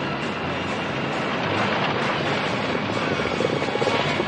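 Dense, steady rumble of many galloping horses and rolling horse-drawn wagons racing together.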